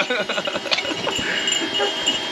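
Goats milling around in a pen, with soft animal sounds and a light metallic jingling.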